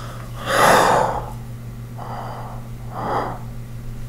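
A man's sharp, breathy gasps through hands held over his mouth, three in all: the loudest about half a second in, two shorter ones near the middle and end. A steady low hum runs underneath.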